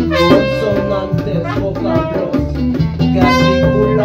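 A band playing an instrumental passage: bass and drums under a held, horn-like lead melody.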